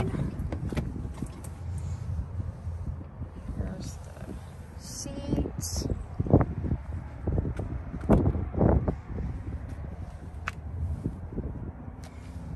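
Jeep Wrangler door latch clicking as the outside handle is pulled and the door swings open, with a steady low rumble of wind and phone handling. A few dull knocks follow about six to nine seconds in.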